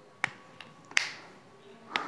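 Four short, sharp clicks spread over two seconds, the loudest about a second in.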